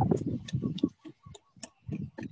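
Chef's knife mincing basil on a wooden cutting board: quick chops at about five or six a second, thinning out after about a second.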